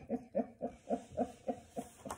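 A woman laughing in about eight short, evenly spaced bursts.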